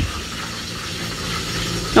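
A steady low hum with an even faint hiss over it.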